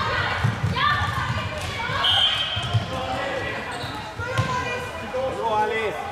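Floorball game in a sports hall: players' shouts and calls ring out in the hall over low thuds and sharp knocks from sticks and ball. The three sharpest knocks come about half a second in, near the middle, and a little before the end.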